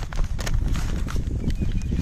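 Footsteps crunching irregularly over dry leaves and stony soil, with a constant low rumble of wind on the microphone.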